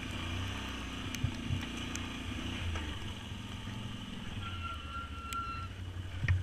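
Can-Am Outlander ATV engine running at low, steady revs while the quad turns around on a snowy trail. A brief high steady tone sounds about four and a half seconds in.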